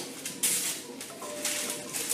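Scissors cutting greaseproof paper, with crisp rustling of the paper sheet, loudest about half a second in.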